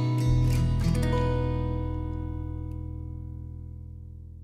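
Acoustic guitar strummed with a pick for about a second, then the band's closing chord rings out over a low bass note and fades away slowly.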